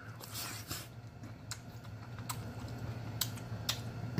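A person chewing a mouthful of soft cheesy vegetables close to the microphone, with irregular wet smacking clicks from the mouth.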